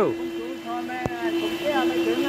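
Faint voices over a steady low hum, with one sharp click about a second in.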